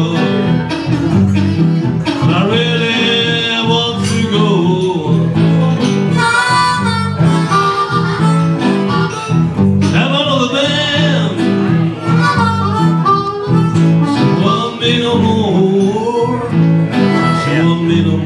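Blues harmonica playing an instrumental break with bending, wavering notes over a steel-bodied resonator guitar keeping a steady rhythm.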